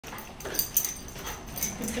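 Puppies playing on a tile floor, with brief puppy vocal noises and short sharp clicks and scuffles; the two loudest clicks come a little over half a second in.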